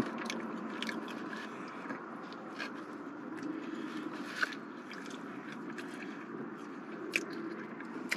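A person chewing a mouthful of McRib sandwich, soft wet mouth sounds with scattered small clicks, and another bite taken about halfway through.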